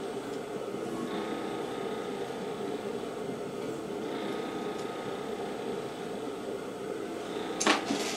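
Electric potter's wheel running at a steady speed, an even hum with a few steady tones.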